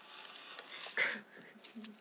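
Rustling and scraping of a small object being handled right against a webcam microphone, with a brief vocal sound about a second in.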